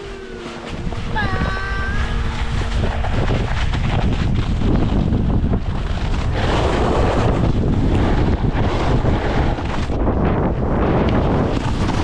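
Wind rushing over the microphone of a camera moving fast downhill on skis, mixed with the hiss and scrape of skis on snow, building up over the first couple of seconds and then running steadily.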